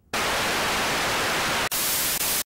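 Loud television static hiss that cuts in suddenly just after the start, steady and even, with a brief drop-out near the end.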